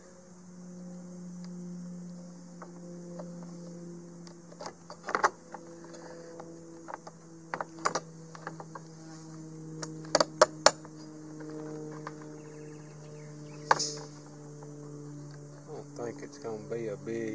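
Scattered small clicks and taps of tiny bolts, washers and fingertips on a white plastic RV roof vent lid during assembly, with a cluster of sharper clicks about ten seconds in. A steady low hum runs underneath.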